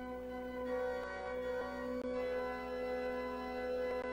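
Organ playing slow, sustained chords that change a few times.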